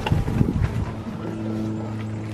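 Golf cart driving across a lawn: a low rumble in the first second, then a steady hum.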